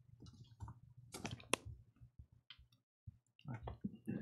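Papers handled close to a podium microphone: a few faint scattered clicks and rustles, the sharpest about a second and a half in, over a low steady hum.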